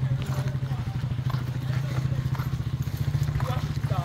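A small engine, like a motorcycle's, running steadily at low revs, a continuous low drone. Faint voices come in near the end.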